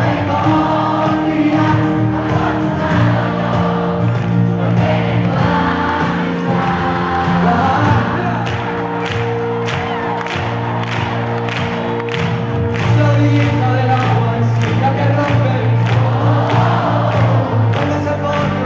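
Live pop band playing through a concert PA with a steady drum beat and sustained bass, and a large crowd singing along, recorded from far up in the stands.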